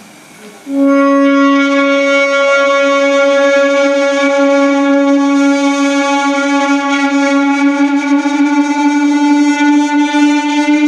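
Electric guitar sounding one loud, sustained droning note with strong overtones. It starts suddenly about a second in, holds steady, and its pitch creeps slightly upward in the last few seconds.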